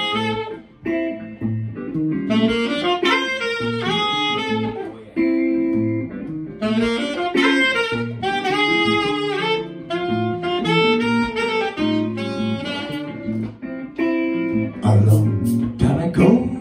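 Live jazz band: a saxophone plays melodic phrases with short breaks over electric bass, drums and electric guitar. Near the end the drums and cymbals come in louder.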